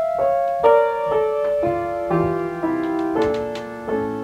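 Upright piano playing a gentle introduction: single struck notes stepping downward one after another over sustained chords, each note ringing and fading.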